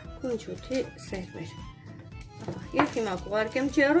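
A voice speaking Armenian over background music.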